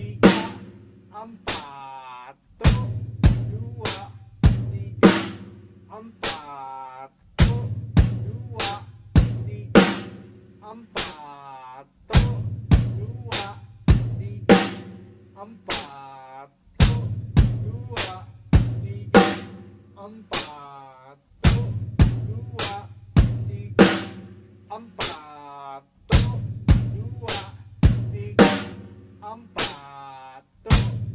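Acoustic drum kit played in a slow, steady beat: hi-hat and bass drum with the snare drum struck on count three of each bar, a basic hand–foot independence exercise.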